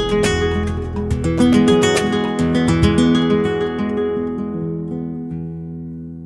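Flamenco guitar playing a bulería: quick strummed chords for the first few seconds, then the last chord left ringing and fading away.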